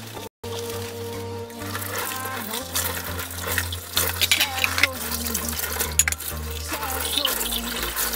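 Dishes being washed by hand at a stainless-steel kitchen sink: running tap water, splashing and light clinks of cups, under background music. The sound cuts out completely for a moment just after the start.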